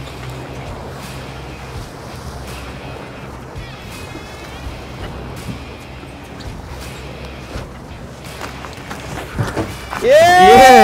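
Steady wind and water noise from a boat under way, with the low hum of its twin Mercury outboard engines fading after about two seconds.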